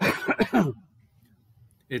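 A man coughing twice into his elbow: two short, harsh coughs in the first second.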